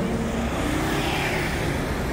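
City road traffic: cars running past on a wide street over a steady low rumble, with one vehicle passing close about a second in.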